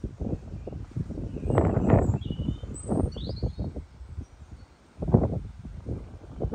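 Wind buffeting the microphone in irregular low rumbles, strongest about two seconds in and again near the end, with a few faint bird chirps in the background.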